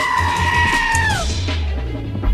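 A long, high-pitched vocal scream held on one note for about a second and a half, falling away at the end, over background music with a steady beat.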